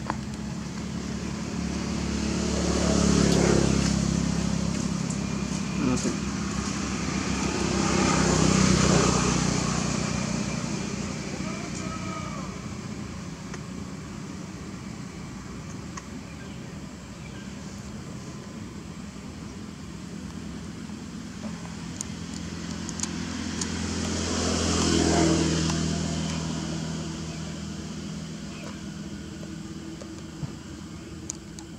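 Motor vehicles passing one after another, each swelling and fading over a few seconds: two passes close together early on and a third about three quarters of the way through, over a steady background hum.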